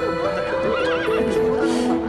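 A horse whinnying, one wavering call about a second in, over background music with held notes.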